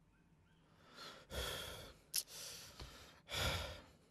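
A person breathing out heavily, three sighing breaths in a row, with two short light clicks between them.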